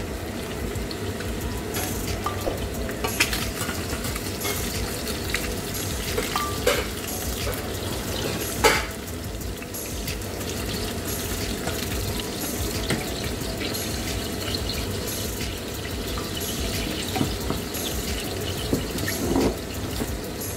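Steady sizzling and bubbling of food cooking in steel pans on a hob, as fish and prawns are stirred in one pan with a wooden spoon; a few sharp clinks of utensils on the pans, the loudest about nine seconds in.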